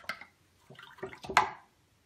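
A paintbrush being rinsed in a jar of water: a few short splashing swishes and taps, the loudest just past a second in.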